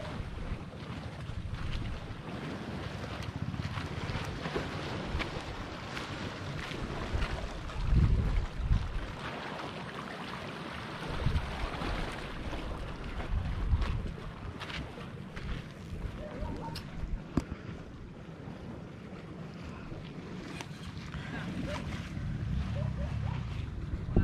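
Wind gusting on the microphone over the steady wash of sea waves against rocks.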